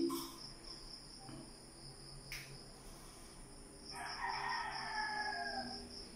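A rooster crows once in the background, starting about four seconds in and lasting under two seconds, over a steady faint high-pitched insect trill. A single sharp click comes near the middle.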